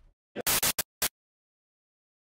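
Four short bursts of harsh, static-like noise in quick succession about half a second in, cutting off abruptly into dead silence.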